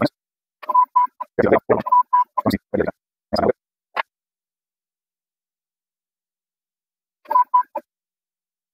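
Stepper motors of an xTool D1 diode laser engraver driving the laser head over a pumpkin, heard as short bursts with a recurring steady whine, separated by silent gaps. The bursts run through the first four seconds and come back briefly near the end.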